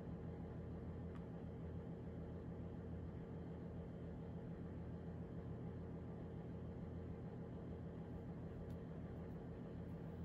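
Quiet room tone: a faint, steady low hum with no distinct sounds in it.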